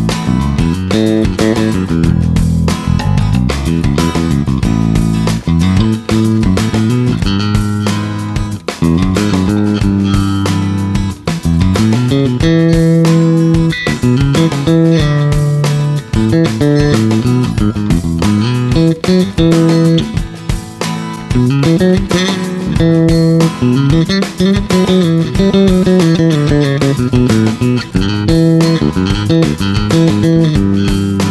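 Four-string electric bass guitar playing a continuous line of plucked notes, with guitar chords behind it. In the later part the notes slide up and down the neck.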